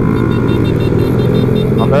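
Motorcycle engine running steadily at cruising speed, heard from the rider's seat. A voice cuts in near the end.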